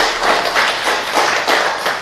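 Audience applauding: many hands clapping at once in a steady, dense patter.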